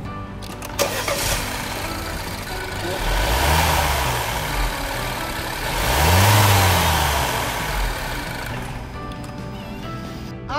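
BMW petrol engine started up about a second in after a fresh oil change, then idling and revved twice, the second rev higher, each rising and falling back to idle as it warms up before the oil level is checked.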